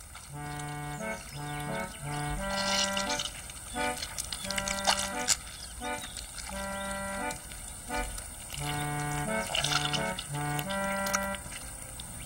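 Accordion music playing a bouncy tune of short, separate held notes that step up and down in pitch, with a few brief wet squishing noises between the phrases.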